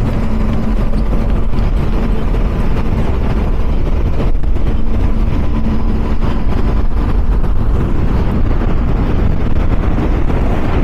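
A powerboat running flat out on its outboard engines: a loud, steady rush of engine noise mixed with wind and water, under a faint constant hum.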